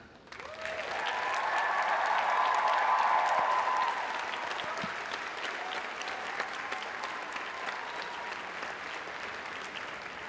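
Large audience applauding in an arena. The clapping swells over the first second or two, is loudest around two to three seconds in, then settles to a lower, steady level.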